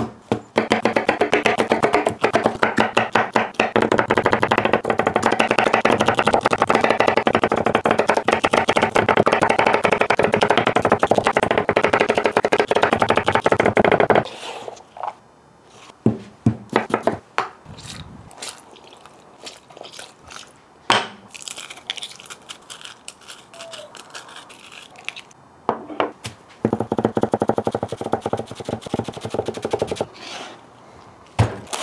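Chef's knife chopping rapidly on a wooden butcher block for about fourteen seconds. Then scattered single knocks and taps on the board, then another burst of rapid chopping near the end.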